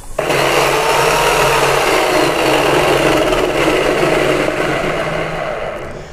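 Electric drill running at speed, spinning a cardboard disc clamped in its chuck. It starts abruptly just after the start, runs steadily, and winds down near the end.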